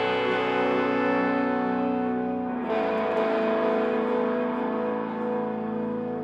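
Funeral doom band playing live: electric guitars and a bass guitar holding long sustained chords, moving to a new chord about two and a half seconds in.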